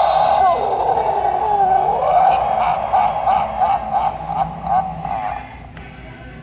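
A Halloween animatronic toy's small speaker playing a loud, distorted electronic tune with a wavering pitch. It pulses in a quick rhythm from about two seconds in and cuts off near the end.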